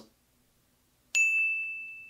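Near silence, then about halfway through a single high ding that rings on and slowly fades.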